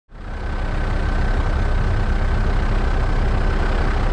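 Steady helicopter engine and rotor noise heard from aboard: a low rumble with a thin, steady whine above it, fading in at the very start.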